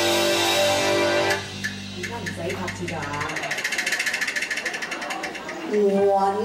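Live band playing a song's opening: loud held chords that break off a little over a second in, then a quieter passage with a rapid, even ticking rhythm, before the full band comes back in near the end.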